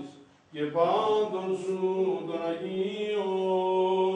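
Greek Orthodox Byzantine chant: sung voice with long held notes that glide between pitches. It breaks off briefly at the start and takes up again about half a second in.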